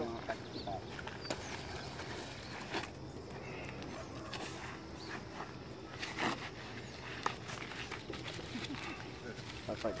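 Faint voices over outdoor background noise, with scattered short clicks and knocks.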